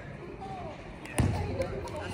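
A volleyball being struck: one loud smack a little over a second in, booming through a large gym, with players' voices around it.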